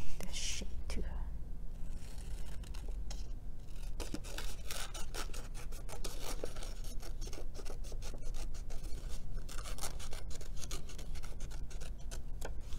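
Scissors cutting construction paper, with repeated short snips and paper rustling.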